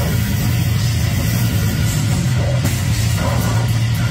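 Live heavy metal band playing loud and continuous: distorted electric guitars, bass and drums run together in a dense, muddy wall of sound that is heaviest in the low end.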